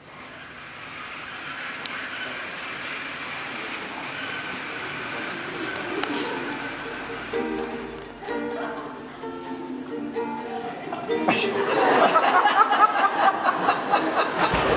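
A small acoustic guitar being strummed and plucked, becoming louder and denser near the end, with voices in the audience.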